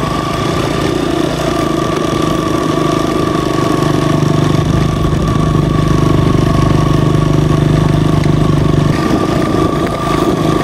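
Motorcycle engine running at low, steady revs as the bike rides slowly through snow, with a thin steady whine above the engine note. The revs rise a little about four seconds in and drop back about nine seconds in.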